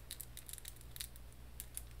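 Small plastic beads of handheld beaded bracelets clicking faintly against each other as they are turned in the fingers, a few irregular clicks a second.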